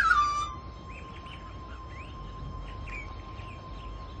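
Ambient background music: a louder note slides down at the start and settles into one long held tone. Short bird chirps run over it throughout.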